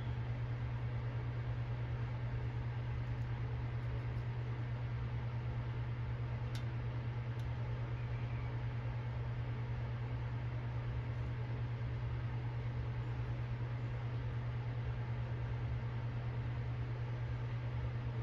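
Steady low hum over an even hiss, as from a running fan, unchanging throughout. One faint tick about six and a half seconds in.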